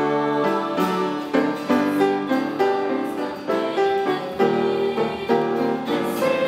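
A small choir singing a hymn with piano accompaniment, the piano's struck notes keeping a steady pulse under the held sung notes.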